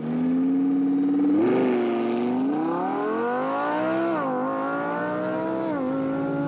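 A car engine accelerating hard through the gears: its pitch climbs, drops briefly at a shift about four seconds in, climbs again and drops once more near the end.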